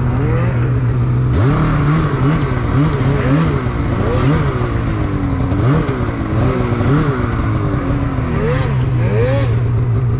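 Snowmobile engine running through deep powder. About a second and a half in, the throttle starts being worked, and the engine revs up and falls back roughly once a second. It settles to a steadier note near the end.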